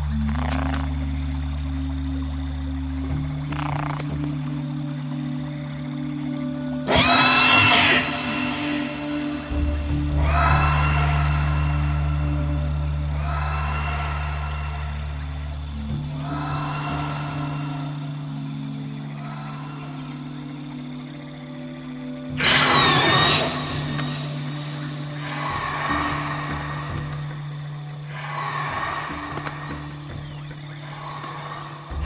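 A dinosaur sound effect: a raptor's high cry, heard twice, once about a quarter of the way in and again about three-quarters through. Each cry is followed by a string of fainter echoes of itself a few seconds apart. Under it runs a music score of low held chords.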